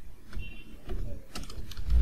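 Computer keyboard being typed on: a few separate key clicks over a low steady hum.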